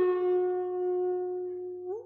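Flute holding one long, steady note that slowly fades, then slides briefly upward near the end.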